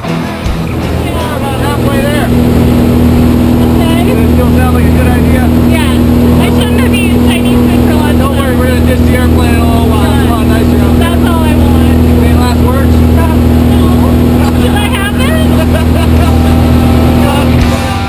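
Jump plane's engine and propeller drone heard from inside the cabin, a loud steady hum with wind rushing in through the open door, and people shouting over it.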